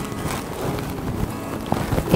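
Tussar silk sari rustling as the fabric is handled and gathered into folds, a continuous rustle with no break.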